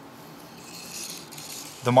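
Steady light rattle of a marble rolling along plastic Quercetti Skyrail track, growing slightly louder about halfway through.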